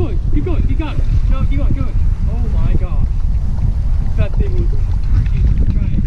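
Wind buffeting the microphone in a steady low rumble over choppy water, with voices speaking indistinctly through it.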